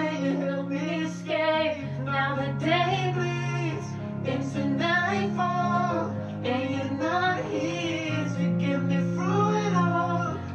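Background music: a song with a sung melody over sustained bass notes and plucked guitar.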